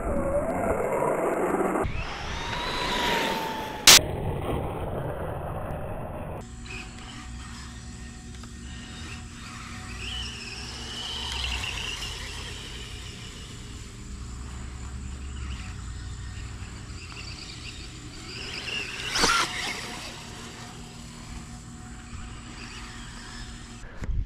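Electric motor of a Losi Promoto-MX 1/4-scale RC dirt bike whining, rising and falling in pitch as it speeds up and slows across the ground. There are sharp knocks about four seconds in and again near the end.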